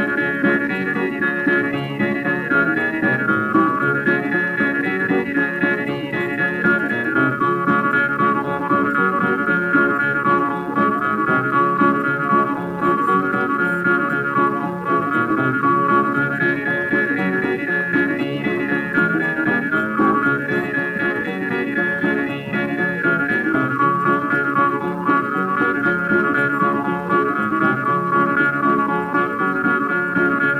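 Instrumental break in a 1929 old-time country string-band recording: strummed guitar accompaniment under a sustained melody line, playing steadily between sung verses.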